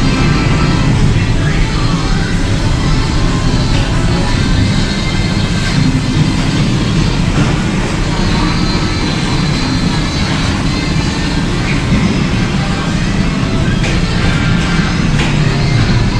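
Loud, steady pinball arcade din: many machines' music, electronic sound effects and voice call-outs running together in one dense wash.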